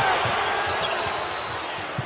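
Steady arena crowd noise, easing slightly, with a basketball being dribbled on the hardwood court.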